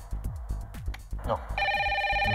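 Pop music with a steady drum beat. About a second and a half in, a phone starts ringing with a fast warbling electronic ring, louder than the music.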